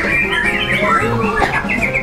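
White-rumped shamas (murai batu) singing in competition, several at once, with rapid whistled phrases and trills and a quick descending run near the end.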